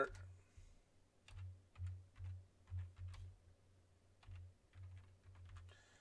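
Faint typing on a computer keyboard: a dozen or so irregular key clicks spread over about four seconds as two short words are typed.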